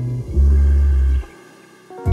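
Electronic pop band playing live between sung lines: a loud, deep bass note held for about a second over sustained tones, then a brief drop in level before the bass returns.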